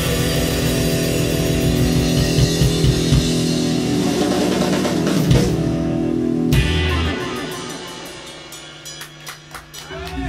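Live rock band of electric guitars, bass and drum kit playing loudly, then closing the song with a final hit about two-thirds of the way in. The ringing fades away under a few scattered sharp claps.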